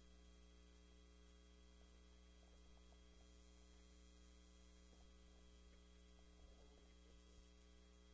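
Near silence: a faint, steady electrical mains hum.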